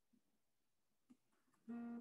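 Near silence, then near the end a person's low closed-mouth hum at a steady pitch, the first half of a murmured 'mm-hmm'.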